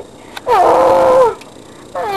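A single wordless vocal cry, like a whine or meow, from a person's voice: it drops in pitch at the start and is held for under a second.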